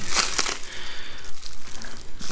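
Plastic bubble wrap crinkling and crackling as hands unfold it, in uneven bursts that are loudest at the start.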